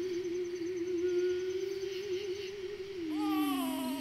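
A voice humming or singing one long held note with a slow wobble. About three seconds in it slides down to a lower note, while a higher line glides downward above it.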